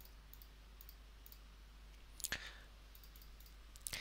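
Faint computer mouse clicks against a quiet room background, with a small group of quick clicks a little past halfway.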